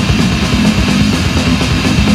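Powerviolence band playing: loud, distorted guitar and bass over fast drums, from a vinyl rip.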